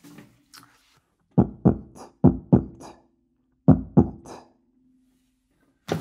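E-flat sousaphone played with beatboxed percussive sounds through the mouthpiece, hi-hat and bass-drum style. A quick run of about five hits starts a second and a half in, then two more follow about a second later, with a faint low held tone underneath that fades out near the end.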